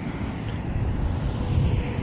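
Road traffic noise from cars passing on a multi-lane road: a steady rush with a low rumble that swells slightly past the middle.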